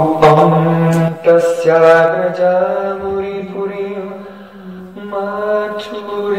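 A man chanting an invocation prayer in long held notes, his voice close and loud, with a short break about a second in and a softer stretch past the middle before the chant picks up again.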